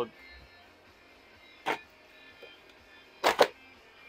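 Hand ratcheting crimper being squeezed and released: one sharp click about halfway through, then two quick clicks near the end. Faint radio music plays underneath.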